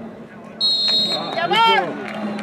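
A referee's whistle blown once, a high steady note lasting about half a second, followed by a man's loud shout that rises and falls in pitch.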